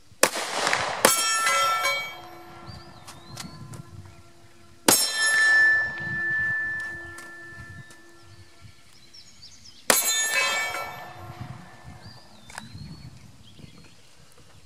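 Shots from a Glock 48 9mm pistol, each followed by a steel target ringing after the hit: two shots about a second apart at the start, then single shots about five and ten seconds in. The plate struck at the five-second shot rings with a clear high tone for about three seconds.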